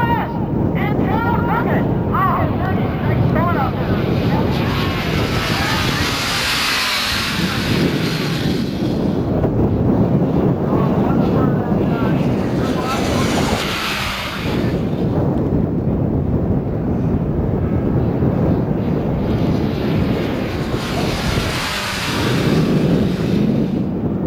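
Racing motorcycle engines running at speed as bikes go past on the track. The sound comes in several waves that swell and fade, with wind buffeting the microphone.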